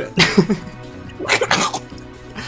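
People laughing in two short bursts about a second apart, with background music.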